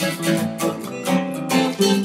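Two acoustic guitars strumming chords together, about three or four strums a second.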